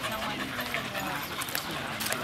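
American Eskimo dog panting with her mouth open, alongside other dog sounds and people talking in the background.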